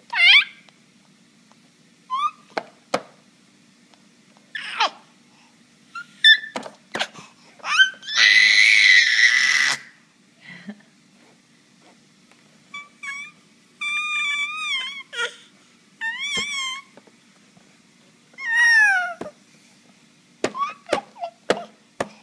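A baby of about eight and a half months squealing and babbling in short high-pitched bursts with pauses between. There is a long, loud screechy squeal about eight seconds in and wavering, warbling squeals a little past the middle.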